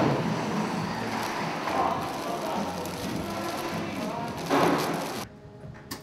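Steady din of a busy indoor wholesale flower market hall, with brief bits of distant voices in it. A little over five seconds in it drops abruptly to the much quieter background of a small shop.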